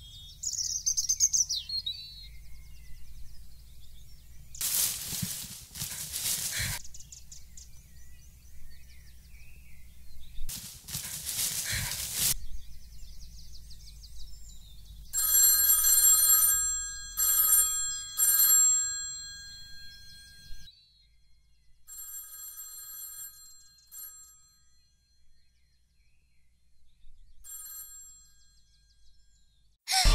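An electronic ringing tone made of several steady pitches, sounding in short on-off pulses for a few seconds just past the middle, then repeating more faintly. Two brief bursts of hiss-like noise come earlier, over a low steady rumble.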